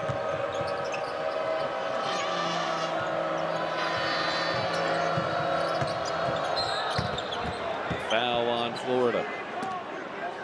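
Arena crowd noise during a basketball game, with a basketball bouncing on the court in a few sharp strikes. A voice is heard briefly near the end.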